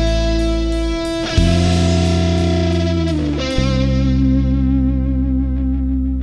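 Closing chords of a rock song on electric guitars and bass, each chord held and ringing. The chord changes about a second and a half in and again a couple of seconds later, then begins to die away at the very end.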